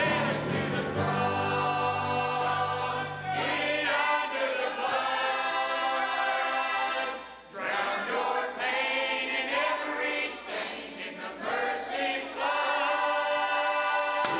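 Large church choir singing a gospel hymn with band accompaniment. The low bass drops out about four seconds in, leaving mostly the voices, with a short break in the singing about halfway through.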